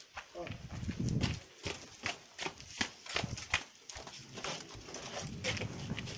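Footsteps on a gritty concrete walkway: a run of sharp, uneven clicks and scuffs, with a brief low voice about half a second in.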